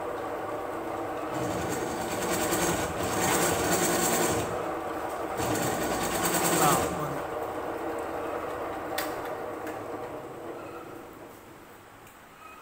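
Pillar drill running, with a countersink bit cutting into a drilled hole in a steel workpiece in two louder, rasping spells. The machine then winds down and fades towards the end.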